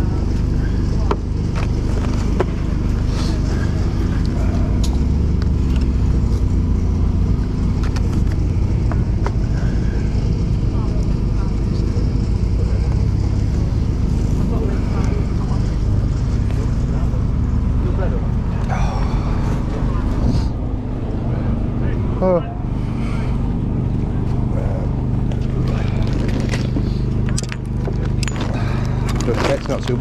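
A steady low motor drone with a constant hum underneath, running without a break, with faint voices in the background.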